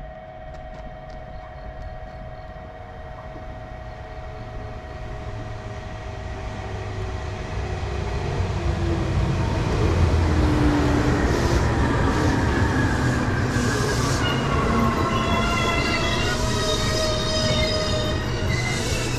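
JR Kyushu 811 series electric train running in alongside the platform. Its rumble grows louder to a peak about halfway through. In the later seconds several whining tones fall step by step in pitch.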